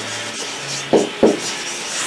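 Marker pen rubbing across a whiteboard in short writing strokes, with two sharper strokes about a second in.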